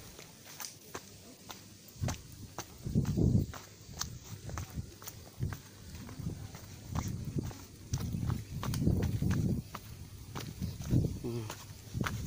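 Footsteps on a dry dirt hiking trail, irregular scattered steps, with intermittent low rumbling gusts of wind on the microphone.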